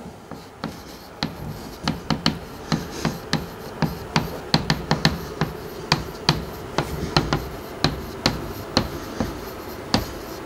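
Chalk tapping on a blackboard as a line of text is written by hand: a string of sharp, irregular clicks, about two or three a second.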